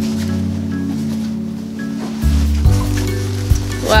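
Bossa nova background music with a low bass line and held chords, under a faint rustle of fabric as a backpack compartment is unzipped and pulled open.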